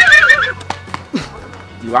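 A man's high, quavering startled shriek, falling away about half a second in.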